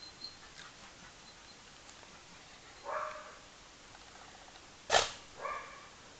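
A dog barking three times: one bark about three seconds in, then a sharp, louder bark near five seconds followed at once by a third.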